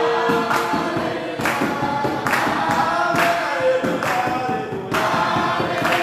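A choir singing, with held notes over a regular beat roughly once a second.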